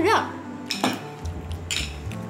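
Metal spoon and cutlery clinking against a ceramic plate, with a few sharp clinks about halfway through and another near the end.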